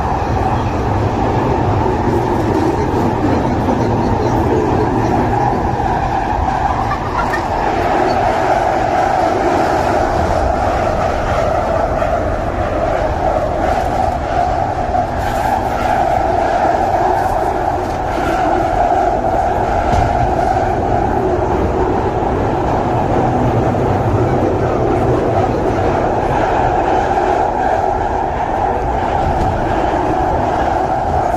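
Underground train running, heard from inside the carriage: a loud, steady rumble and roar of wheels on rails that holds level throughout.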